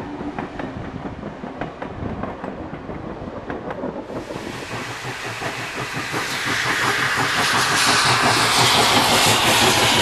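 Passenger carriages roll past with a steady clicking of wheels over the rail joints. After a cut about four seconds in, a steam locomotive approaches with a hiss of steam that grows louder and stays loud as it draws level near the end.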